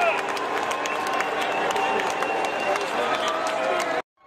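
Ballpark crowd in the stands: many voices shouting and calling out over a general din, with scattered hand claps.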